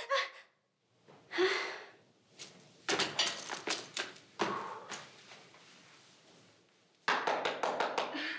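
A short breathy exclamation, then a flurry of sharp percussive hits about three seconds in, and a small group starting to clap near the end, in a small room.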